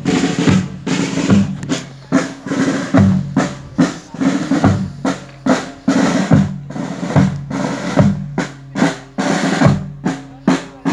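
Marching snare drums and bass drums playing a funeral march, loud accented strokes about every three-quarters of a second with quicker snare strokes filling in between.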